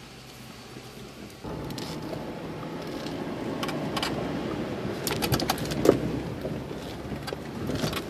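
Jeep running slowly over a rough, muddy trail, heard from inside the cab. The sound gets louder about a second and a half in, then comes a flurry of knocks and rattles from the body and loose gear jolting over the bumps, the sharpest one about six seconds in.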